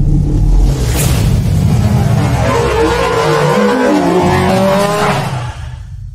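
Channel intro sound effect: a loud, deep rumble with a sharp crack about a second in, then rising and falling sweeps in pitch like an engine revving, dying away near the end.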